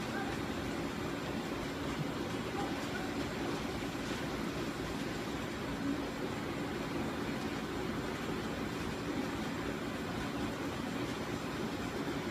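Steady, even background hum of room noise with no distinct events.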